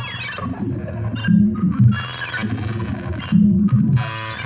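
Techno played on Korg Volca synthesizers: a repeating low bass line under higher synth notes with pitch sweeps.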